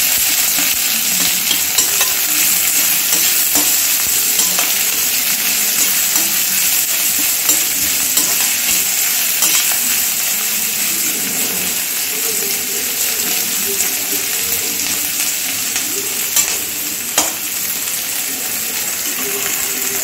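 Sliced onions and green chillies sizzling steadily in hot mustard oil in a metal kadai, browning toward golden, while a spatula stirs them and now and then scrapes or clicks against the pan, most sharply near the end.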